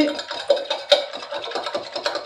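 A metal spoon stirring in a stainless steel tumbler, scraping and clinking against the bottom and sides in quick, irregular strokes with a faint metallic ring, to dissolve salt in hot water.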